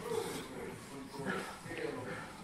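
Short, indistinct human vocal sounds without clear words.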